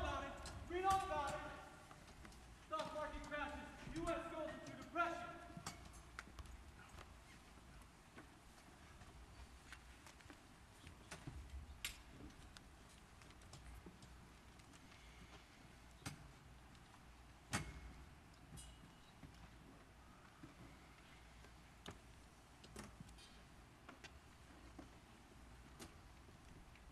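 Quiet hall sound with scattered footsteps and knocks from a chorus of men shuffling about on stage risers, the sharpest knock a little past halfway. Men's voices are heard in the first few seconds.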